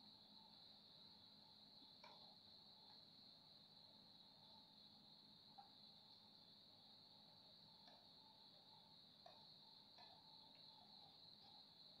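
Near silence, with a faint, steady high-pitched trill of crickets and a few faint clicks.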